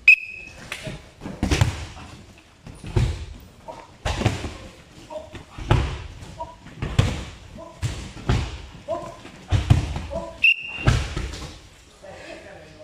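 Bodies hitting wrestling mats in a large hall: about eight heavy thuds, roughly one every second and a half, from wrestlers grappling and being driven to the mat. A short high-pitched tone sounds at the very start and again near the end.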